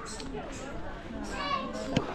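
Voices of people in the street, children's among them, with a higher voice calling out about a second and a half in and a sharp click right at the end.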